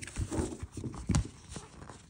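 Fingers and fingernails handling glossy sticker sheets on a planner page: a few irregular light taps and clicks, the sharpest about a second in.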